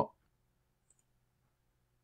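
Near silence: faint room tone with a single faint computer mouse click about a second in.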